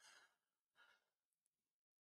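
Near silence, with two faint, short breaths at the microphone in the first second or so.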